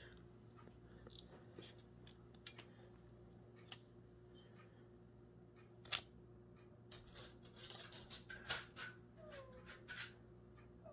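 A spatula scraping banana bread batter into a foil-lined loaf pan: faint scrapes and a few short taps, the clearest about 4, 6 and 8.5 seconds in, over a low steady hum.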